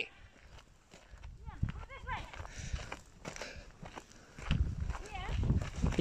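Herd of cattle walking close by, their hooves thudding on a dirt track and grass, the steps heavier in the last second and a half. Faint voices are heard in between.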